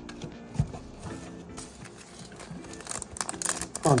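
Crinkling and tearing of a foil trading-card pack being ripped open, starting about three seconds in, over soft background guitar music. A single soft knock comes about half a second in.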